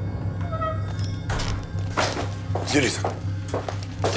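Dark, low, droning film-score music with several thuds and knocks, from about a second in, as a man walks in across a wooden floor. There is a short vocal sound near the end.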